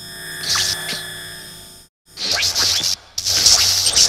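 Electronic intro music for an animated title sequence. A held synth chord swells for about two seconds and cuts off. After a short gap come two loud, hissy bursts, the second one the loudest.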